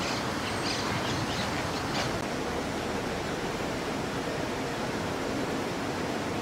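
Steady, even outdoor background rush with no distinct events.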